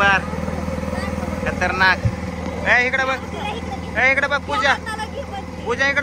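Boat motor running steadily. A high voice calls out in short phrases about half a dozen times over it.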